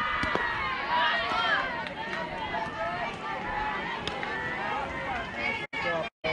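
Many overlapping voices of softball players and onlookers talking and calling out at once, with no single clear speaker.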